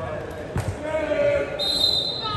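A single sharp impact of a volleyball, followed by players and spectators calling out in a gym. A brief high steady tone sounds near the end.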